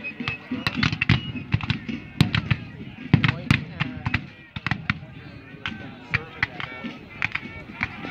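Ongoing musket fire from lines of Civil War reenactors firing blanks: an uneven crackle of sharp shots, several a second, some louder and nearer than others. Voices talk alongside.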